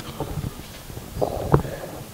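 Handling noise from a handheld microphone being moved from one person to another: soft, low, irregular rustling with a small knock about one and a half seconds in.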